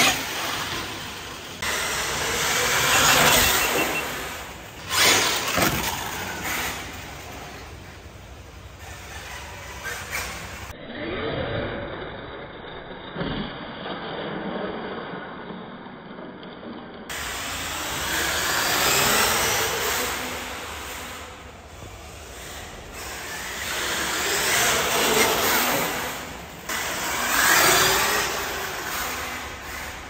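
Electric hobby-grade RC monster truck with a Castle 2100 kV brushless motor, driven hard on a concrete floor: motor and drivetrain noise with tyre noise, rising and falling in pitch and loudness in repeated surges as it accelerates and slows.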